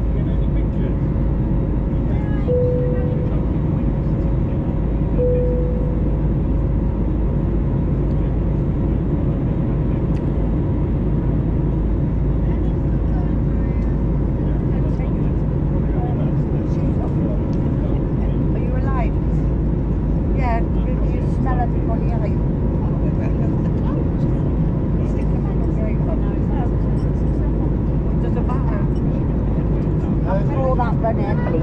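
Steady cabin noise of an Airbus A320neo in flight: its CFM LEAP-1A engines and the airflow make an even rumble with a faint steady tone. There are two short tones a few seconds in, and passengers' voices are faint in the background.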